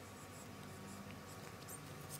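Faint rustling and light ticks of a photocard being handled and slid into a plastic binder sleeve, over a low steady hum.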